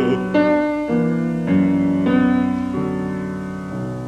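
Piano alone playing the closing chords of a song accompaniment, a new chord about every half second, growing quieter toward the end. A bass voice's last held note ends just at the start.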